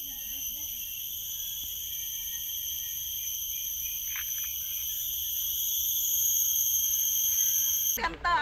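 Forest insects droning: a continuous high buzz held on several pitches at once, growing louder over the last few seconds. A brief falling whistle sounds about four seconds in.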